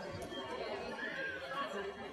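Faint background chatter of voices in a large hall, with no loud sound.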